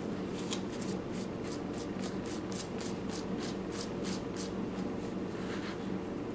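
Paper towel rubbing and wiping over a salted squirrel pelt, taking off the excess salt, in quick repeated strokes about four a second that stop about three-quarters of the way through, with one fainter stroke near the end.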